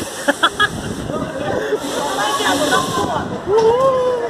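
Mostly voices: short bursts of laughter near the start and a long drawn-out call near the end that rises and then falls, over steady background chatter and noise.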